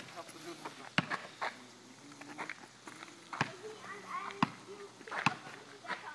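Quiet outdoor ambience with faint distant voices and a few scattered sharp knocks.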